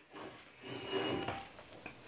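Silicone spatula scraping and folding soft flour-based buttercream against the inside of a stainless steel mixing bowl: a brief soft scrape, then a longer one about half a second in.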